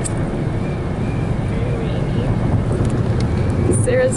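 Steady road noise inside a car at highway speed on a rain-wet road: a low rumble with tyre hiss.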